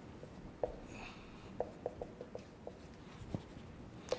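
Dry-erase marker writing on a whiteboard: short, faint squeaks and taps at an uneven pace as the letters are stroked out.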